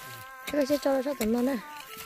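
A person's voice, high and pitch-bending, sounds for about a second starting half a second in. Under it runs a steady high-pitched drone of held tones that shift in pitch now and then.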